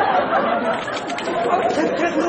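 Several people talking over one another: a steady babble of indistinct office chatter.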